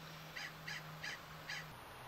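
A bird calling four times in quick succession, short faint calls about a third of a second apart.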